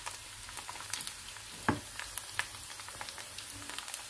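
Diced onion frying in oil in a pan, a steady sizzle, with a few sharp clicks from a wooden spoon against the pan.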